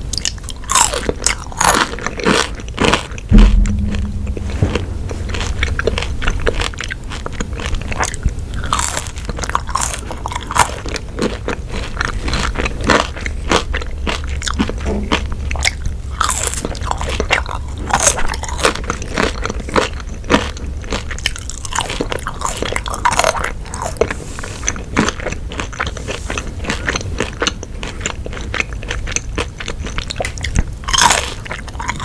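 Close-miked eating of ketchup-dipped French fries: repeated bites, crunching and wet chewing mouth sounds. A loud low thump about three and a half seconds in.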